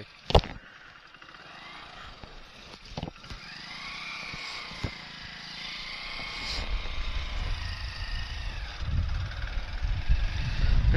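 A motorcycle engine running and building in loudness from about six and a half seconds in as the bike moves off. Before it come a sharp click about a third of a second in and a few lighter knocks.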